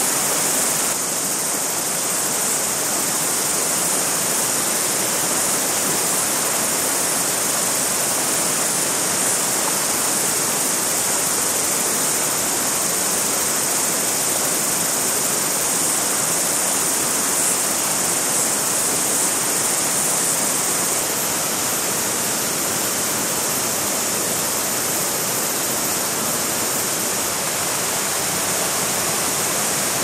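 Steady rushing of a small river's fast riffle, its white water tumbling over stones.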